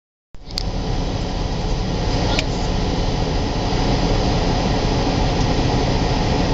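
Steady rushing background noise with a low rumble, starting just after the opening, with two brief clicks: one about half a second in and one about two seconds later.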